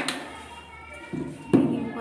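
Low voices murmuring, with a sharp knock about one and a half seconds in.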